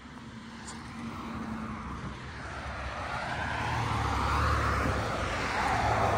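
A road vehicle approaching along the road, its tyre and engine noise growing steadily louder and loudest near the end.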